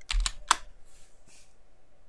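Computer keyboard keys pressed for the Ctrl+C copy shortcut: a few quick key clicks in the first half-second.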